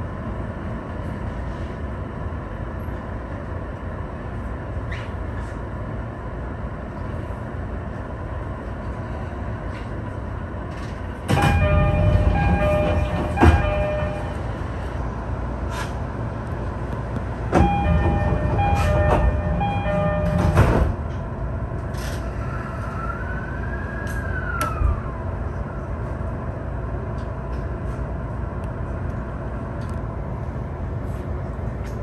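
An E231-1000 series electric train running on long welded rail, heard from the driver's cab as a steady rumble of wheels and motors. The rail has recently been re-ground and resounds. Two louder stretches, about 11 and 17 seconds in, each last a few seconds and carry steady ringing tones.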